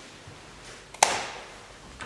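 A single sharp knock about a second in, with a short ringing tail in a small, hard-walled room.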